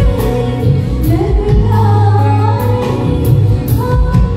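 A woman singing a melody into a microphone with a live band, over a loud PA: regular drum beats and a steady bass line under the gliding vocal line.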